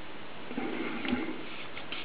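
Faint rubbing and a few light clicks as a diving flashlight's rubberised head is twisted in the hands.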